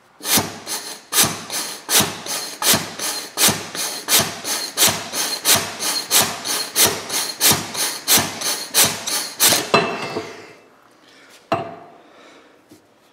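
Forklift hydraulic cylinder's rod and piston being worked back and forth in the barrel, giving a steady run of rasping strokes, about three a second, for nearly ten seconds. A single knock follows near the end.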